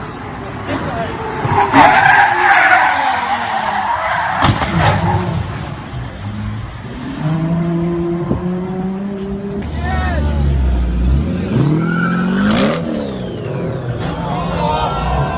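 Car engines revving and tyres skidding, the sound changing abruptly twice; near the end the engine pitch rises and falls.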